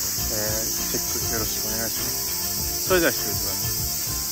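Steady, high-pitched chorus of summer cicadas in the trees, with brief voice sounds over it, the loudest about three seconds in.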